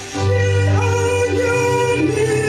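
A woman singing a slow worship song in long held notes, sliding up into each one, over a Yamaha electronic keyboard accompaniment with a steady bass. The music drops briefly at the very start, then comes back in.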